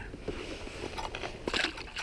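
A bass released by hand drops back into the lake with a short splash about one and a half seconds in, after a few faint clicks of handling.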